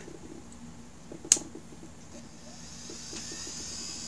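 A 20 GB Maxtor hard drive spinning up on power alone: a sharp click about a second in as its power connector is pushed home, then a faint high whine that rises in pitch and grows louder from about two and a half seconds in as the spindle motor comes up to speed.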